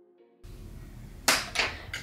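Faint background music that cuts off abruptly about half a second in, giving way to steady microphone hiss with a low hum. About a second later comes a sharp, loud short noise, then a softer one.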